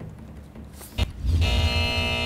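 TV show transition sting: a sharp hit about halfway through, then a loud, bass-heavy synth chord held steady.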